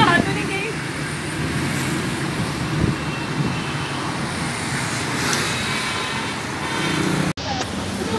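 Steady road traffic noise with women's voices talking close by; the sound drops out for an instant near the end.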